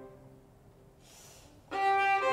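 String quartet: a held chord dies away into a near-silent pause, broken by a brief soft hiss about a second in. Near the end all four instruments come back in together on a loud sustained chord.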